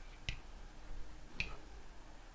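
Two sharp clicks about a second apart: a pen tapping on a Promethean ActivBoard interactive whiteboard as the handwriting is finished. Faint room tone between them.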